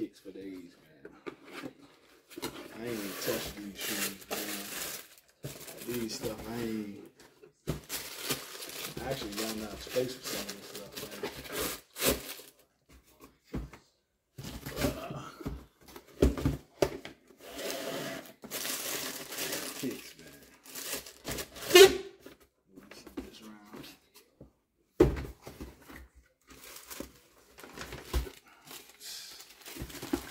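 Tissue paper crinkling and cardboard shoeboxes rustling as sneakers are unpacked, with a few sharp knocks of boxes and lids being handled, the loudest a little past two-thirds through.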